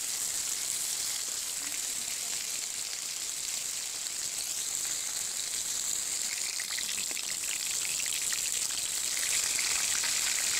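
Silver carp steaks shallow-frying in hot oil in a large metal wok: a steady sizzle with dense crackling that grows busier in the second half.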